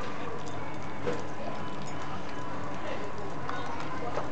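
Small dogs eating from stainless steel bowls on a hard floor: faint irregular clicks and clinks of mouths and food against the metal bowls, over steady background noise.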